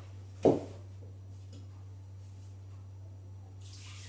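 Milk poured into the stainless-steel jug of a Monsieur Cuisine Connect kitchen machine, a hissing splash that starts near the end. Before it comes a single sharp knock about half a second in, and a steady low hum runs underneath.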